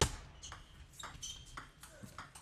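Table tennis rally: the celluloid ball clicking sharply off the rackets and the table in quick succession, about seven knocks in two seconds, the first the loudest.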